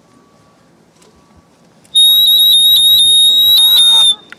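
A sudden, very loud, steady high-pitched squeal, one piercing tone with a fainter, higher overtone, that starts about halfway in, holds for about two seconds and cuts off.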